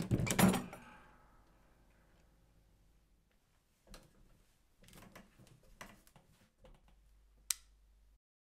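A loft hatch thuds open at the start, then a few quieter scattered knocks and scrapes of wood being handled, and one sharp click near the end.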